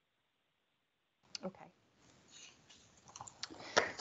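About a second of near silence on the call line, then a few sharp clicks and light rustling picked up by a participant's microphone, with a short cluster of clicks near the end, like keyboard or mouse clicks.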